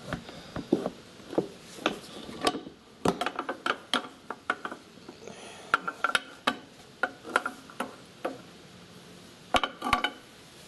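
Aluminium right-side engine cover of a Kawasaki Bayou 400 ATV being rocked and pulled free by hand, giving irregular metallic clinks and knocks, with a quick cluster near the end as it comes away from the engine.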